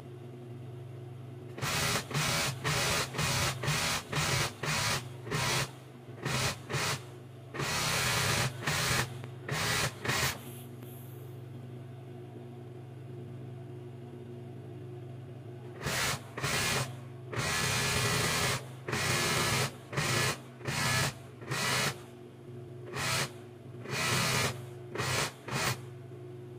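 Industrial overlock (serger) machine stitching the edge of a sheet in many short bursts of running, over a steady low hum, with a pause of several seconds about halfway through.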